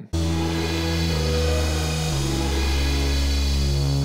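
An Octatrack sampler plays a sampled major-triad chord over a bass note in a descending walk-down: E major, then B major over D sharp, then the E major triad over a C sharp bass, which sounds as C sharp minor seven. The chords are sustained, changing about one second in and again about two seconds in, and the last one rings on.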